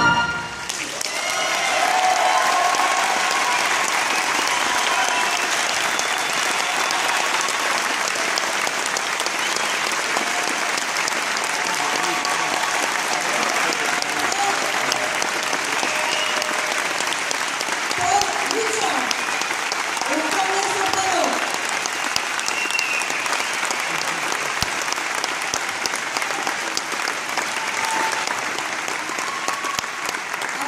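A large audience applauding steadily in a hall, with voices calling out here and there. The brass band's final note cuts off right at the start.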